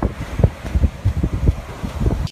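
Wind buffeting a phone's microphone outdoors by the sea: irregular low rumbling gusts over a faint steady hiss.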